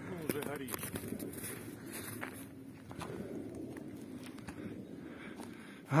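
Faint, indistinct voices over quiet outdoor background noise, with scattered soft footstep-like clicks of someone walking on snow.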